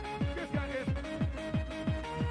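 Old-school rave music from a DJ mix: a fast four-to-the-floor kick drum, about three beats a second, under held synth chords.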